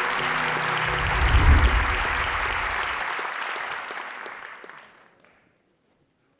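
Audience applause, with the tail of the intro music under its first seconds, including a deep low swell a second or two in. The clapping fades away about five seconds in.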